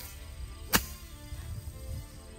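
A golf club striking a ball out of long grass: one sharp crack about three quarters of a second in.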